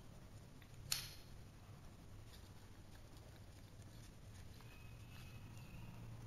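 Pieces of a heart-shaped interlocking burr puzzle being handled and fitted together: one sharp click about a second in, then a few faint taps, over a low steady background hum.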